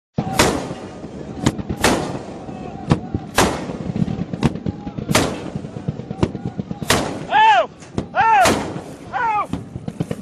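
A heavy gun mounted on a pickup truck firing single loud rounds about every one and a half seconds, with fainter shots in between. Men shout several times near the end.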